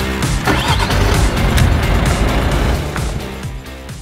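A car engine started with the key about half a second in, running and then fading out near the end, under background music with a steady beat.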